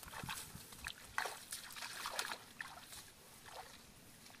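Bare feet stepping through wet, waterlogged grass: a run of irregular swishes of grass stalks with small squelches and splashes of water underfoot, the sharpest step about a second in.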